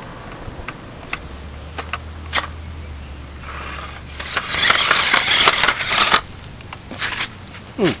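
Small electric RC stunt car with wheels on swinging arms scrabbling over gritty concrete: scattered sharp clicks from its plastic wheels and body, then a louder stretch of scraping and clattering in the middle.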